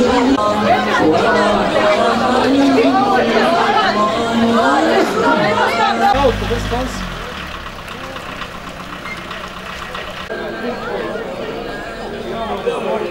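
Many people talking at once, no single voice clear. About six seconds in there is a brief low rumble, after which the chatter is quieter.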